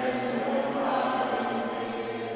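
Voices singing a slow hymn, holding long notes, with a sung 's' hiss just after the start.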